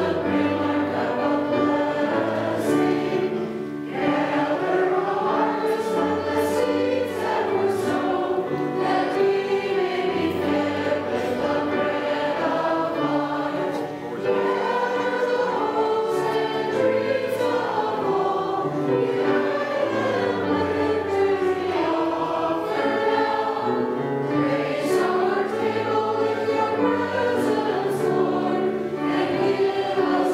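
A church congregation sings the offertory hymn together in slow, sustained phrases, with two brief breaks between phrases.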